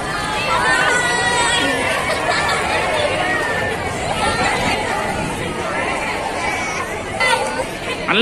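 A group of young women chattering and calling out over one another, many voices at once, with a louder shout near the end.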